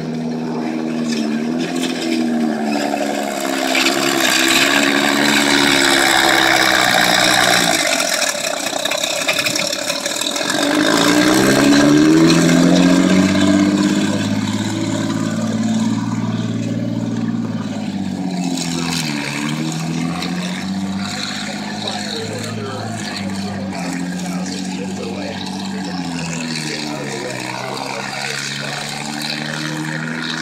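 Hetzer (Jagdpanzer 38) tank destroyer's engine running as it drives, its pitch rising and falling several times as it is revved and eased off, loudest about a third of the way in.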